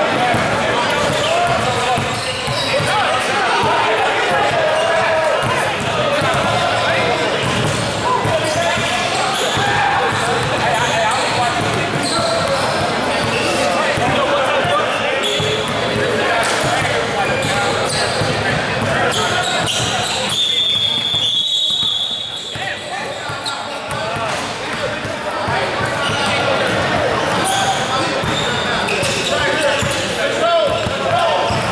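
Indoor basketball game in a large gym: many voices talking and calling out, and a basketball bouncing on the hardwood floor during free throws. About two-thirds of the way through comes a single high whistle blast lasting about a second and a half.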